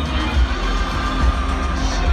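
Recorded rock music played loud over a stadium PA system, with a heavy, booming bass.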